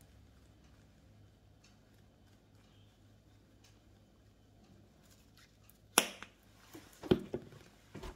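Mostly very quiet, with faint light ticks of ground turmeric being shaken from a plastic spice shaker over a steel bowl of fish. About six seconds in comes one sharp click, then a few smaller knocks a second later.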